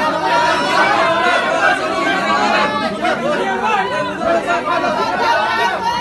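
Many people talking over one another: loud, indistinct chatter of a crowd of voices.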